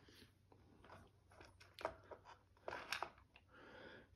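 Faint handling sounds: soft clicks and rustles of wires and a small electronic speed controller being moved about inside a plastic trolling-motor head housing, with a couple of slightly sharper clicks about two and three seconds in.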